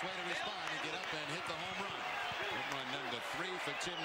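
Ballpark crowd noise: men's voices talking over a steady murmur, with a few short sharp knocks or claps scattered through.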